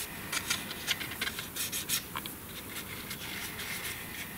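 Light rustling and small scratchy ticks of a black cardstock box base being handled and turned over in the hands.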